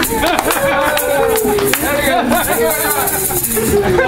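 Several excited voices overlapping, with laughter, a few sharp handclaps and the rattle of a hand shaker.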